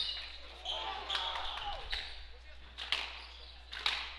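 A squash rally: sharp knocks of the ball off racquets and court walls, the clearest about three seconds in and twice just before the end, with shoes squeaking on the wooden floor and voices from the crowd.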